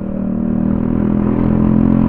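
Scooter engine and exhaust running under throttle as the scooter gathers speed, a steady engine note that climbs slightly in pitch.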